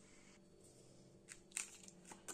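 Near silence, then a few faint clicks and crinkles in the second half as frozen plastic pouches of ryazhanka are handled on a stone countertop.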